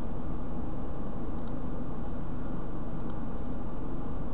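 Steady low hum and hiss of background noise picked up by the microphone, with two faint mouse clicks about a second and a half and three seconds in.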